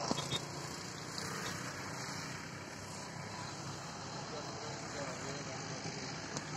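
Steady open-air background noise with faint distant voices, and a couple of light knocks just after the start.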